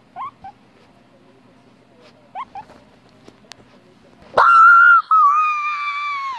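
Guinea pig giving a few short rising squeaks, then a little over four seconds in two long, loud squeals, the second one slowly falling in pitch.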